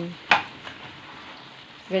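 Hot dogs frying in hot oil in a pan, a steady sizzle, with one sharp click about a third of a second in.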